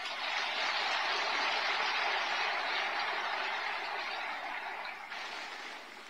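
Audience applauding in a large hall, a dense clapping that starts abruptly and tapers off in the last second or so.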